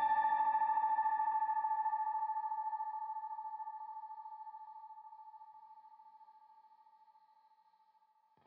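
The closing note of an ambient horror film-score track: a single held, ringing synthesizer-like tone with a wavering pulse. It fades out to silence about six seconds in.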